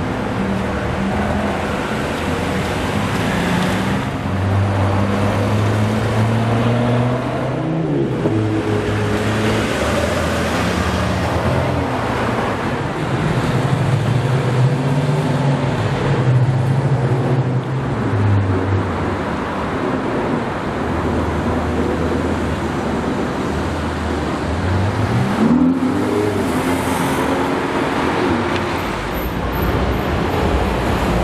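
Several cars' engines passing one after another through city traffic, each a steady drone over road noise, with the revs climbing twice as cars accelerate away, about a third of the way in and near the end.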